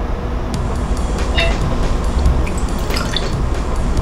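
Liquor being poured for a cocktail, a steady running of liquid, with a few light clinks of metal bar tools.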